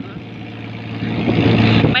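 A fishing boat's engine running with a steady low hum that grows louder through the second half.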